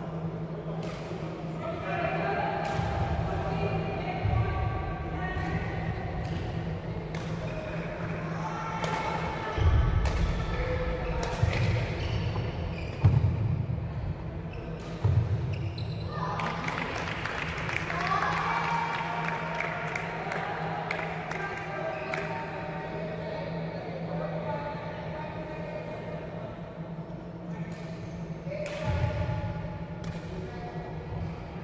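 Badminton rally on a wooden indoor court: sharp cracks of rackets striking the shuttlecock and thudding footfalls, the heaviest thumps coming between about ten and fifteen seconds in, over background voices and a steady low hum.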